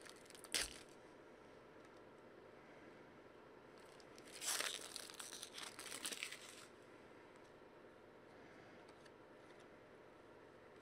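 Foil trading-card pack wrapper crinkling and tearing under the fingers: a short crackle about half a second in, then a longer spell of crinkling around the middle, with faint quiet between.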